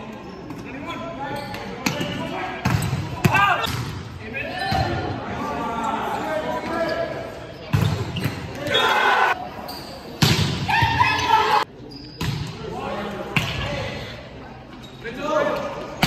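Volleyball rally in a sports hall: the ball is struck sharply several times, off hands and arms at the net, amid players and spectators shouting.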